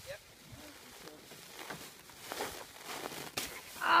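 Plastic drop cloth crinkling and rustling as it is dragged across a snow-covered car roof, with a few louder crackles in the second half.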